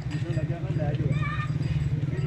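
Indistinct voices of people talking in the background over a steady low drone.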